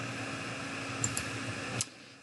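Steady fan-like hiss with a low electrical hum. Two faint clicks come about a second in, and a sharper click near the end, after which the background noise drops away.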